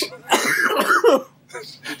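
A man laughing hard in short, breathy, cough-like bursts that stop a little over a second in.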